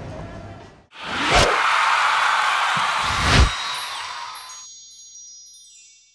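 Outro sound effect: a long whooshing rush with a deep hit just after it starts and another about two seconds later, then a shimmer of high, twinkling chime tones that fades away.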